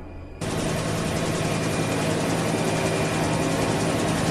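Steady helicopter engine and rotor noise, starting abruptly about half a second in and holding at an even level.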